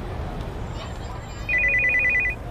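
Mobile phone ringing: a fast trilling ring of two alternating high tones starts about one and a half seconds in, over a low street rumble.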